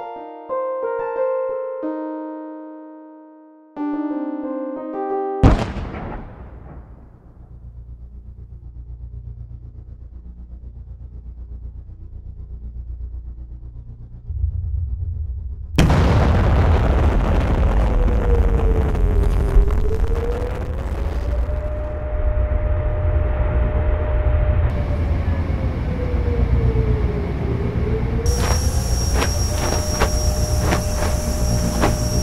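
Light keyboard music, cut off about five seconds in by a sudden loud boom that dies away into a low rumble. From about sixteen seconds a heavier rumbling din sets in, with a wailing air-raid siren over it that falls and rises twice: a wartime air attack.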